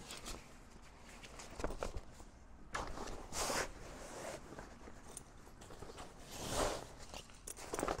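Heavy canvas cover rustling and swishing as it is pulled over a folded Bimini top, in a few short brushes with small clicks between them.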